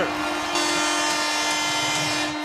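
Arena goal horn sounding one long steady, buzzing note just after a goal.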